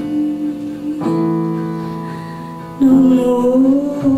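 Live jazz band: sustained keyboard chords, with a new chord struck about a second in that slowly fades. Near the end a woman's voice comes in loudly on a long, wavering sung note.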